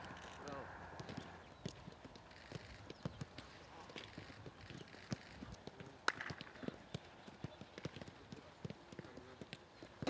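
Footballs being kicked in passing drills on a grass pitch: a string of sharp, irregular thuds, with one louder strike about six seconds in. Faint voices can be heard early on.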